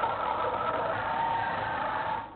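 Steady outdoor din of a street procession, a dense wash of noise with faint music underneath.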